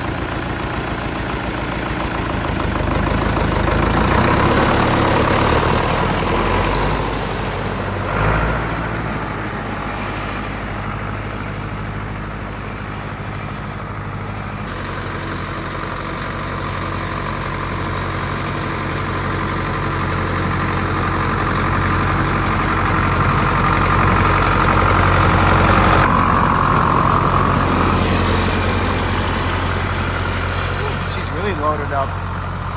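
Ford 861 tractor's freshly rebuilt four-cylinder diesel engine running steadily as the tractor drives along a gravel trail pulling a box grader. The sound changes abruptly about halfway through and again near the end.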